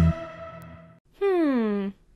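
The tail of the electronic song dies away. About a second in, one short vocal sound glides steadily down in pitch and stops after less than a second.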